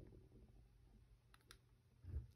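Near silence with two faint clicks close together about one and a half seconds in, from a smartphone being handled in the hands.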